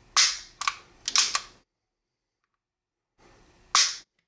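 Sharp metallic clicks from the action of a Beretta 92XI pistol being handled: a few in the first second and a half, then one more near the end after a dead-silent gap.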